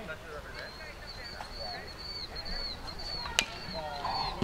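Baseball game ambience of spectators' chatter with a steady string of high chirps, broken about three and a half seconds in by a single sharp crack of the pitched ball at home plate.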